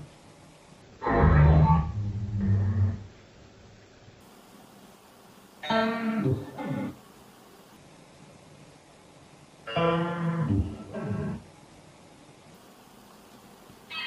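Garbled voice fragments from a Necrophonic spirit-box app on a phone: three short bursts a few seconds apart, each one to two seconds long, played back slowed.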